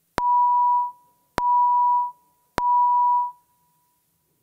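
Three identical electronic beeps at one steady mid pitch, each starting with a click and lasting under a second, about 1.2 s apart. This is the chamber voting system's tone announcing that a roll call vote is open.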